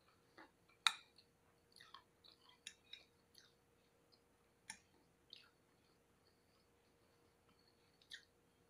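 Quiet eating sounds: soft chewing with a scattering of small clicks and taps of a fork against a plate, the sharpest about a second in.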